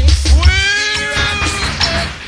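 Reggae sound system music from a live dance tape. The heavy bass cuts out about half a second in, leaving a long drawn-out wailing vocal note that glides up and then holds.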